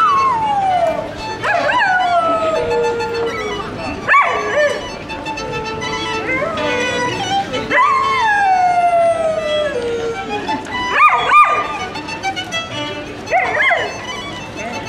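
A golden retriever howling along to a violin: several long howls that rise and then slide slowly down in pitch, with a few short yips between them, over held violin notes.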